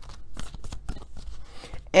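A deck of tarot cards being shuffled in the hands, heard as a quick, irregular run of light card clicks and flicks.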